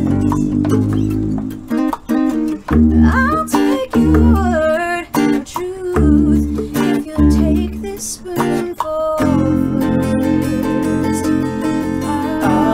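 Acoustic folk band playing: acoustic guitar with a hand drum and singing voices. The music goes in short stop-start hits with gaps, then settles into a full sustained chord about nine seconds in.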